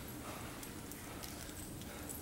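Quiet room tone in a pause between lines, with a few faint, scattered clicks.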